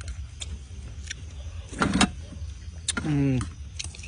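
Metal spoons clicking against plates as two people eat, with mouth and eating noises. A short hummed "mm" about three seconds in. A steady low hum runs underneath.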